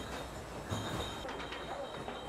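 Wine bottling line running in a mobile bottling truck: steady machine noise, with a faint high whine coming in about a second in and light clinks of glass bottles.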